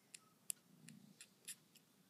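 Faint, sharp clicks of newborn kittens suckling at their mother, about six small ticks in two seconds, the loudest about half a second in, over near silence.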